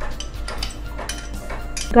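A run of light clinks and taps of kitchenware: a bowl and utensils knocking against a nonstick pan as ingredients go in.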